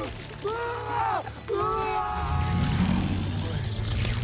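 A young man screaming twice, strained and high, over a film score. A low rumbling drone swells in about halfway through.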